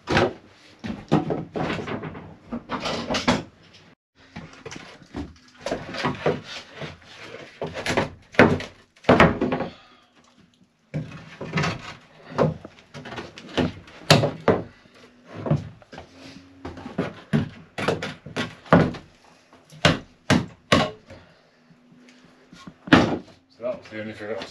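Repeated wooden knocks and thuds as a long steam-bent frame is worked and pushed into place against the boat's wooden hull frames, coming in irregular runs with short pauses.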